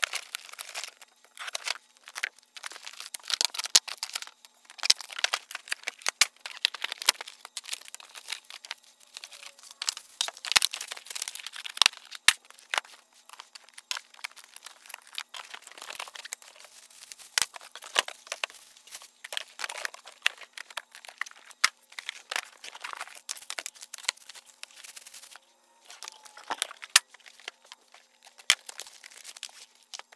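Cardboard boxes and plastic packaging being handled, torn open and crinkled in irregular bursts, with scattered sharp knocks as tool parts are set down on a wooden workbench.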